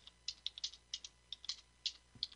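Typing on a computer keyboard: a quick, irregular run of soft key clicks, about a dozen in two seconds.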